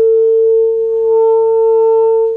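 Saxophone holding one long, steady note at a single pitch.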